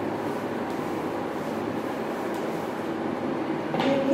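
A steady, even rushing noise with no rhythm, running at the same level before and after. A short knock comes near the end.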